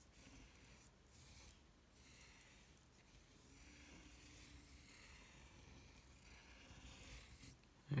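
Faint scratching of a pencil on paper, going round in repeated light strokes as circles are drawn, stopping just before the end.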